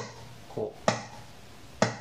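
Golpe on a classical guitar: a fingertip taps the wooden top beside the strings, three knocks about a second apart, each with a short ring from the body. It gives a snare-drum-like hit with the snares off, without the strings' 'cha'.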